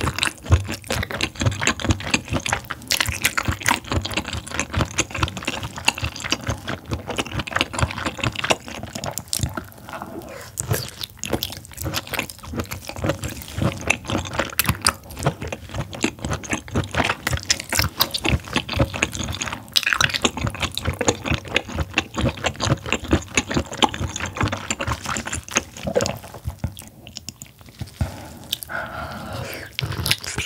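Close-miked chewing of firm abalone meat: dense wet mouth clicks and smacks with sticky, squelching bites, easing briefly near the end.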